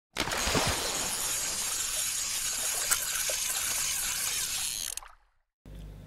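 Steady rush of flowing water, like a fast stream, that stops suddenly about five seconds in.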